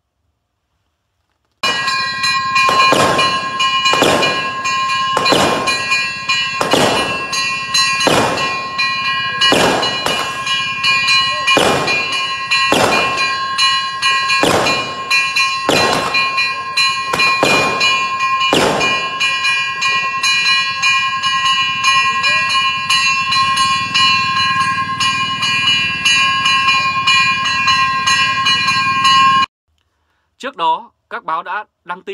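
A ringing metal bell or alarm gong struck about once a second, about fifteen strikes, over a steady ring. The strikes stop about two-thirds of the way through, the ringing carries on, and then the sound cuts off abruptly.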